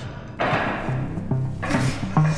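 Background music with low, stepping notes; a hissing swell comes in sharply about half a second in and another builds near the end.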